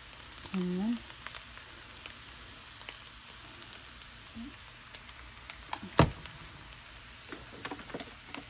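Stir-fried noodles sizzling in a hot frying pan, a steady hiss with scattered light clicks. A single sharp knock about six seconds in stands out above the sizzle.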